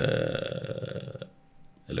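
A man's drawn-out hesitation sound, a low held 'uhh' lasting about a second and slowly fading, followed by a short pause before he speaks again.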